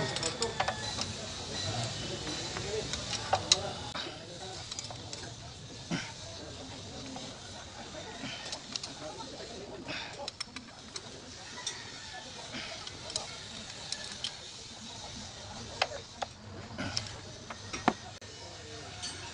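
Irregular sharp metallic clicks and taps of hand tools against the injection pump mounting on a diesel engine, as the pump is fastened in place.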